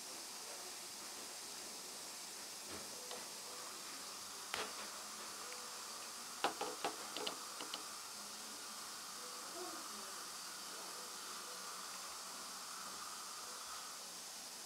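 Faint steady hiss with a few light clicks of metal suturing instruments, a needle holder and tweezers, handled against a plastic dental model: one click about four and a half seconds in, then a quick run of clicks about six and a half to eight seconds in.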